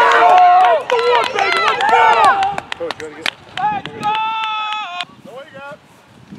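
Several men shouting and cheering at once on a football sideline, loud and overlapping for the first couple of seconds, with scattered sharp claps. About four seconds in one voice holds a long call for about a second, then the shouting dies away.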